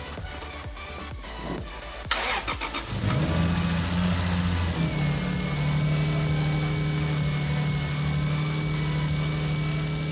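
Lexus IS300's 2JZ-GE straight-six being jump-started from a portable jump pack on a nearly dead battery. The starter cranks for about two seconds, the engine catches about three seconds in with a brief rise in revs, then settles into a steady idle.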